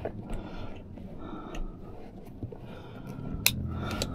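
Handling of a quilted dog seat cover and its headrest strap: low fabric rustling with a few light clicks, and a sharper click about three and a half seconds in as the strap's plastic clip snaps shut around the headrest.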